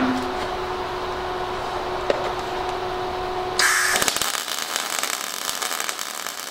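A steady low hum, then about three and a half seconds in an Everlast iMig 200 MIG welding arc strikes: a loud, continuous crackling hiss as a bead is laid.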